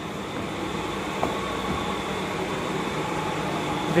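Steady hum and rumble of a standing electric suburban local train (EMU), heard from inside the coach, slowly growing a little louder, with one faint click about a second in.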